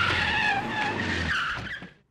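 Car tyres squealing over a running engine. The engine hum drops out a little past halfway and the squeal fades away near the end.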